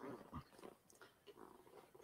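Near silence: room tone over the call audio, with a couple of faint, brief sounds in the first half second.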